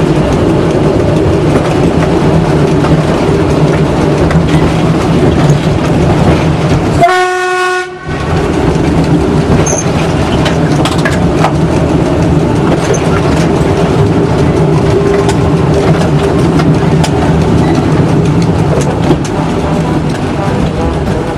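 Train running over jointed track and points, heard from the front cab: a steady rumble and wheel-on-rail noise with faint rail-joint clicks. About seven seconds in, the running noise drops away for about a second and a single horn-like tone sounds.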